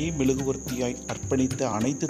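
A narrator's voice speaking Tamil in a steady, continuous delivery, over a faint steady high-pitched tone.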